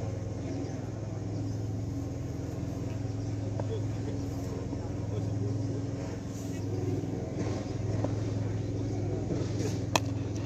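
A steady low hum with faint voices, and just before the end a single sharp crack of a cricket bat striking the ball.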